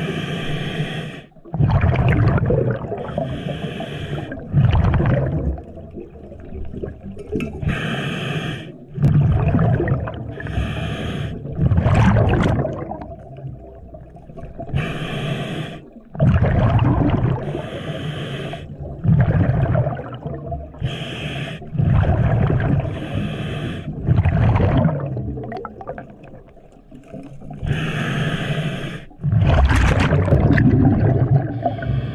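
A scuba diver's breathing through a regulator, heard underwater: a hissing inhalation through the demand valve alternating with a louder, low gurgling rush of exhaled bubbles, a breath every three to five seconds.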